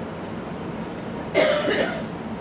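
A man's single cough about a second and a half in, close to the microphone, over a steady background hum of room ventilation.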